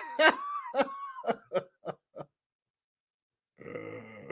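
A man laughing: a run of about six short bursts that come closer together and fade out about two seconds in, then a faint start of more laughter near the end.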